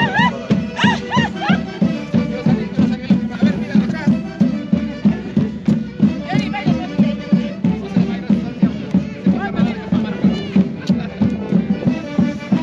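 Andean festival band music in the Santiago style of the Mantaro valley, played for the dancing procession, with a steady, quick beat and sustained reedy melody lines.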